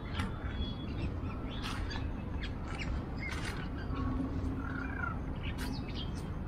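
Crows cawing and other birds calling in short, scattered calls over steady low background noise.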